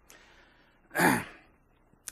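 A single short breathy vocal sound about a second in, a sigh-like exhale or chuckle whose pitch falls, against quiet room tone.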